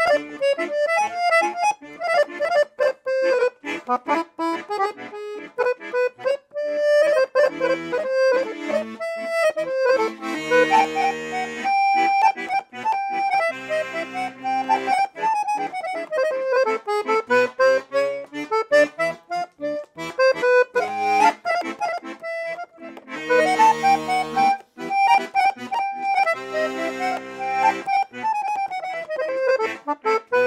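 A 1950s New York-made Bell piano accordion with Binci reeds and a double tone chamber, played: a quick melody with running passages on the treble keyboard over bass-button accompaniment. Fuller chords with low bass notes come in a few times.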